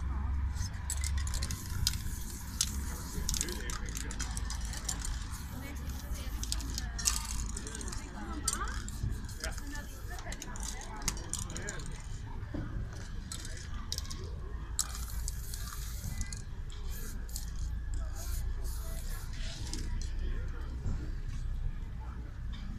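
Aerosol spray-paint cans being handled: rattling and clinking against one another, with short hisses of spray now and then.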